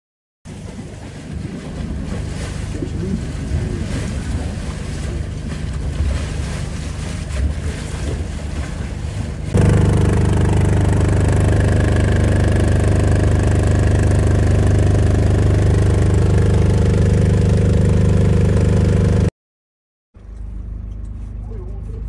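A houseboat's engine running steadily under way, with rough wind and water noise over it at first. About ten seconds in the sound changes abruptly to a louder, steady engine drone, which stops suddenly near the end.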